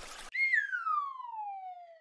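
Superchat alert sound effect: a brief hiss, then a single whistle tone that glides steadily downward for about a second and a half.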